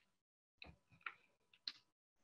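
Near silence, broken by three faint short clicks spaced unevenly, about half a second apart.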